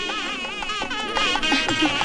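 Traditional South Indian wedding music: a reedy wind instrument playing a wavering, ornamented melody over drums.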